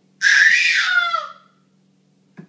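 A baby's high-pitched squeal lasting about a second, dropping in pitch as it trails off.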